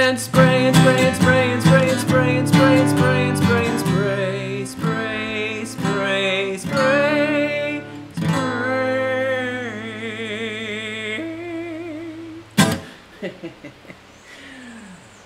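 A man singing an improvised tune to his own strummed acoustic guitar, holding long notes near the end. A single sharp knock follows as the song stops.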